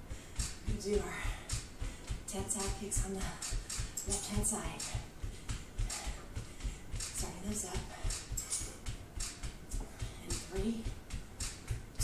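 Bare feet jogging in place on an exercise mat: a steady run of soft thumps, about three a second, with short pitched sounds and faint music over it.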